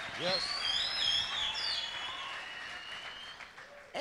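Congregation reacting with high whistles that glide up and down over a light wash of applause and crowd noise, fading toward the end.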